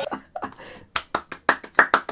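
Hands clapping: a run of sharp claps, coming quicker in the second half.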